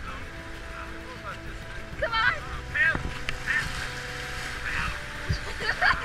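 Fast river water rushing past an inflatable boat, with several loud, short, wavering calls over it, the loudest about two and three seconds in and again near the end.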